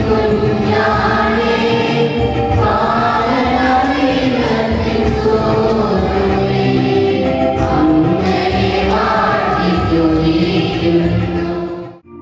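Church choir singing a hymn with musical accompaniment, in long sustained notes. It breaks off abruptly at the very end.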